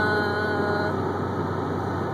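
Steady road and engine noise inside a moving car's cabin. A short, steady pitched tone sounds over it for about the first second.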